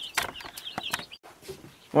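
A run of short bird calls and clicks in the first second, from birds kept inside the tiny house, then low room tone after a cut.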